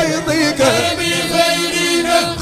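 Men's voices chanting an Arabic Sufi religious poem in Tijani hadara style: a held note sustained beneath a lead voice's shifting, wavering melodic line.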